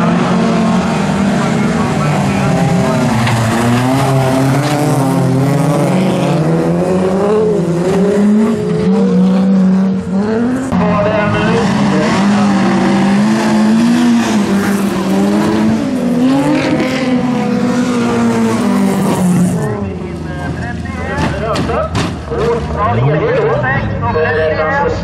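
Several bilcross race cars' engines revving hard through a corner, pitch rising and falling with throttle and gear changes, with some tyre squeal. About twenty seconds in the engine noise drops, and a few sharp knocks follow.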